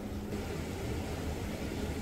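Steady low rumbling noise of a pot of spinach curry cooking over a gas burner turned up high.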